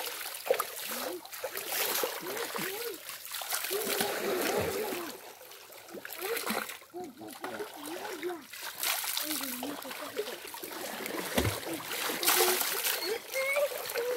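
Water scooped from a shallow stream and poured over a person's head and long hair, splashing and splattering back into the stream in repeated bursts while a hair mask is rinsed out.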